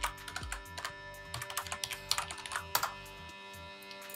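Typing on a computer keyboard: a quick run of key clicks lasting about three seconds, then stopping. Soft background music with a steady beat runs underneath.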